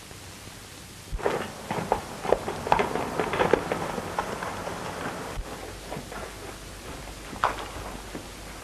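Hoofbeats of a galloping horse on a dirt trail, a rapid irregular clatter over steady hiss, starting about a second in and tailing off after about four seconds as the horse is pulled up. Then only hiss, with a single knock near the end.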